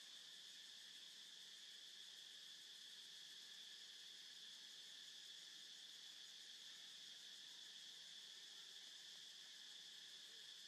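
Near silence apart from a faint, steady insect chorus: one constant high-pitched drone that does not change.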